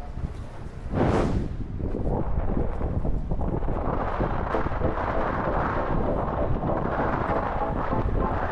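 Strong gusty wind buffeting the microphone of a 360 camera held out on a selfie stick, a heavy continuous rumble with a strong gust about a second in.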